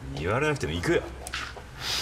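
Speech: a man speaking Japanese in drama dialogue.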